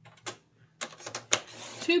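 A paper trimmer in use: a quick run of clicks and scraping as cardstock is slid on the trimmer and its cutting rail is handled, with one sharp click just past the middle.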